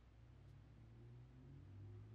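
Near silence: faint steady low room hum.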